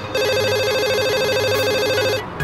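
Incoming-call ringtone from a car's hands-free phone system: a fast-pulsing electronic warble that starts a moment in.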